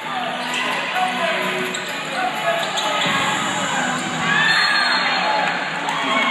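Basketball game play in an indoor arena: the ball bouncing on the hardwood court and sneakers squeaking, over a steady chatter of crowd and players' voices.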